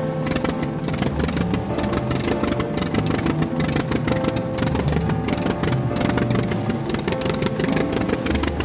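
Engine sound effect of a cartoon monster truck running as it drives along, over background music.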